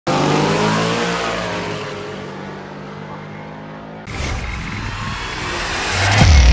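A racing Mustang's engine at high revs, fading as the car pulls away. About four seconds in it cuts off suddenly to a rising whooshing swell.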